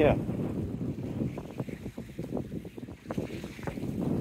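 Wind buffeting the microphone, a low steady rumble that eases off toward the end.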